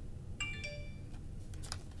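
A brief electronic chime: a few steady high tones about half a second in, fading out within about half a second, followed by a few faint clicks.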